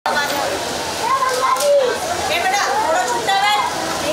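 Several children's high-pitched voices chattering over one another, with no single voice standing out.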